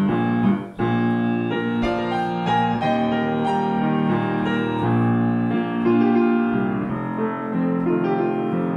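Solo piano playing the slow chordal introduction to a vocal ballad, with sustained chords and new chords struck at intervals, the first of them about a second in.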